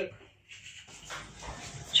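Faint shuffling and handling noise with a few soft knocks, as of someone walking indoors carrying a phone, after a brief moment of dead silence near the start.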